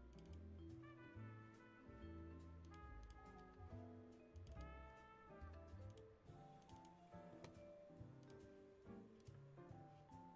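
Faint background music: a melody of changing pitched notes with light ticking percussion.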